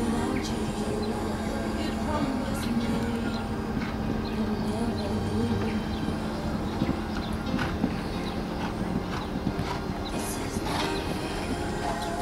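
A horse cantering on the course, its hoofbeats heard as scattered thuds over a steady background of voices and music.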